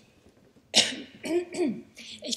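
A woman with a hoarse, strained voice coughing and clearing her throat into a lectern microphone: a loud first cough about three-quarters of a second in, then a couple of shorter ones.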